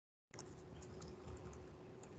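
Faint typing on a computer keyboard: a few light key clicks over a weak steady hum, the sound cutting in about a third of a second in.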